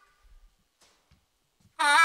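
Blues harmonica: a pause between phrases, then near the end a loud note comes in, bending up in pitch at its start.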